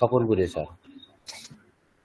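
A person speaking briefly over an online video call, followed about a second and a quarter in by one short, sharp click-like noise.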